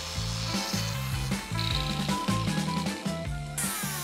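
Background music with a stepping bass line and a melody, with faint workshop tool noise under it.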